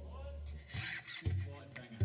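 A low, steady hum-like tone from the band's setup breaks off about three quarters of a second in and comes back half a second later. Brief, faint voices or laughter fall in the gap.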